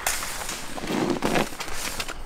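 Scraping and rustling of a person wriggling on his back over asphalt under a plastic mesh fence, his backpack and tripod dragging along: irregular noisy scuffs, a couple of them louder past the middle.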